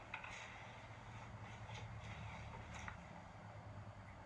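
Quiet room tone: a steady low hum with a few faint clicks or rustles.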